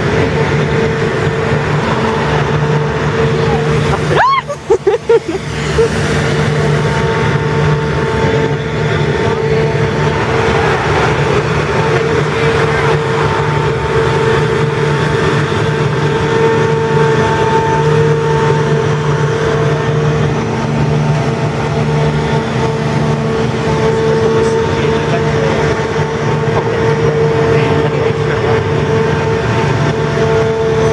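Engine and hydraulic drive of the Grand Éléphant, a giant walking mechanical elephant, running close by: a loud, steady machine drone with a fixed hum.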